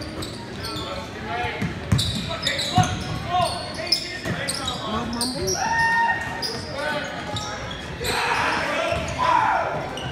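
Live basketball play in an echoing gym: the ball bouncing on the hardwood floor, shoes squeaking, and voices of players and spectators calling out. The crowd noise swells briefly near the end.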